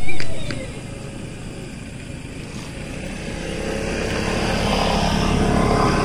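A motor vehicle's engine and road noise growing steadily louder as it approaches, cut off abruptly just after the end, with a loud sudden sound right at the start.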